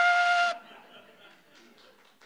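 A trumpet holding one long note that stops about half a second in.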